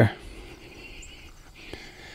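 Quiet outdoor background: a faint steady hiss, with one soft click about three quarters of the way through.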